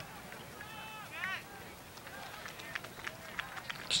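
Faint, distant shouts from players and spectators across an outdoor soccer field, with a few light taps near the end.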